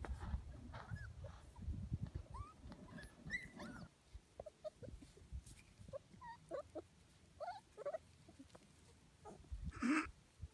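Six-week-old Shetland Sheepdog puppies making many short, squeaky yips and whimpers as they play. There is a low rumbling noise in the first few seconds, and a louder yelp-like sound just before the end.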